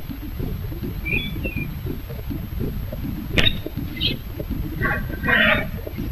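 A few faint bird chirps over a low steady rumble, with the rustle of a fabric backpack being handled and a sharp click a little past the middle.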